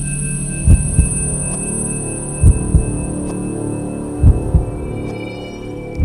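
Soundtrack of a low, steady droning hum with a heartbeat effect over it: a double thump, lub-dub, comes three times, about every two seconds.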